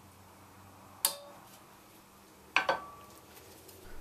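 Two sharp metallic clinks, about a second and a half apart, each with a brief ring, as the new rear brake pads and caliper parts are handled at the caliper mounting bracket.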